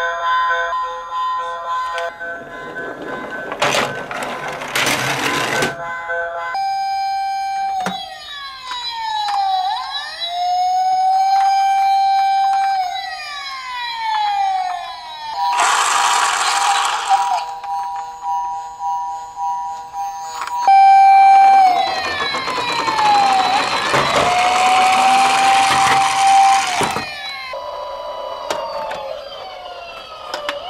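Toy police car's electronic siren wailing: a tone that rises, holds and falls, repeated several times from about seven seconds in. Bursts of rushing noise come in between the wails.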